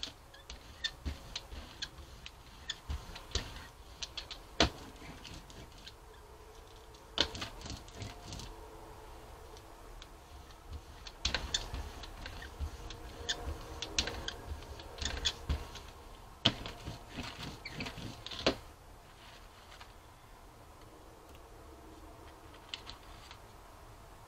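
Rubber brayer rolling acrylic paint across a gel printing plate, with irregular clicks and taps as it is worked back and forth and set down. The ticking thickens in the middle stretch, then eases off near the end.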